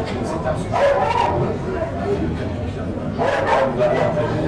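Mostly speech: a man talking in French into a handheld microphone during an interview.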